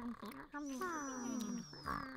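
A voice making several quiet vocal sounds whose pitch slides downward.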